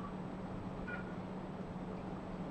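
Steady low outdoor hum of distant vehicles, with two short high-pitched calls, one at the very start and one about a second in.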